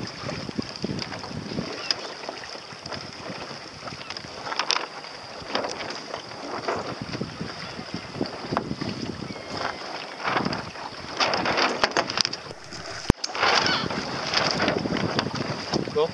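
Choppy sea water splashing and slapping against the hull of a small sailing boat under way, with wind buffeting the microphone; one sharp click late on.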